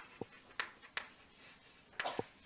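Chalk writing on a chalkboard: a few short, sharp taps and strokes of the chalk, bunched in the first second.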